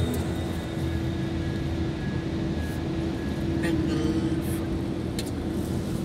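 Road and engine noise inside a moving car's cabin: a steady low rumble with a steady hum over it, and two brief faint clicks in the second half.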